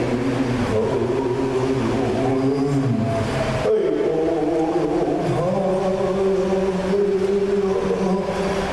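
A Native American song sung in long held notes that step from one pitch to the next, with a short break a little before halfway.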